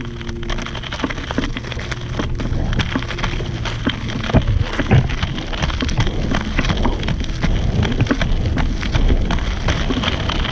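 Large inflated off-road inline skate wheels rolling over loose gravel: a continuous gritty crunch with many small irregular clicks of stones under the wheels.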